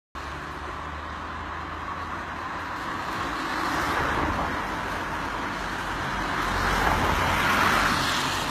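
Road traffic: cars passing on a main road, swelling up about halfway through and again near the end over a steady low rumble.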